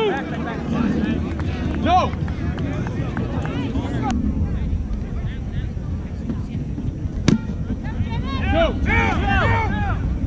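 Shouted calls from kickball players across an open field over a steady low rumble of wind on the microphone, with one sharp smack about seven seconds in.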